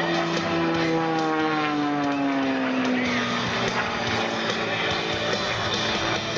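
Extra 300 aerobatic airplane's 300-horsepower Lycoming flat-six and propeller droning in flight, the pitch falling steadily over the first three seconds or so. Music plays alongside it.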